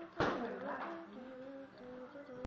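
A person humming a slow tune in held, steady notes. Just after the start there is a brief, loud burst of noise.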